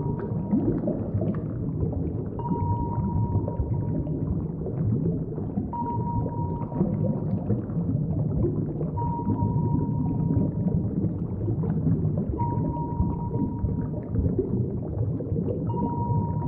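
Underwater sound effect for a cartoon submarine on the move: a continuous low rumbling drone with a single steady beep, about a second long, repeating about every three seconds.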